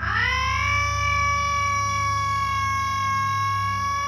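A long, high siren-like tone that glides up in pitch over the first half second and then holds one steady pitch, over a steady low hum.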